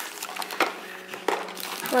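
Clear plastic bag crinkling and small packaged treats being handled and set into plastic buckets, with a few short sharp clicks and knocks.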